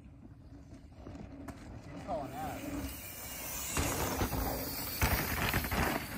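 Mountain bike tyres crunching on a dry dirt trail, growing louder and louder as the bike comes close, with heavy thuds about four and five seconds in.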